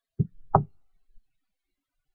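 Two short, dull knocks about a third of a second apart, then quiet.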